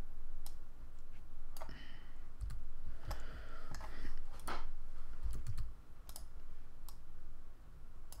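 Irregular clicking of a computer keyboard and mouse as shortcut keys are pressed, scattered sharp clicks with a couple of dull low thumps among them.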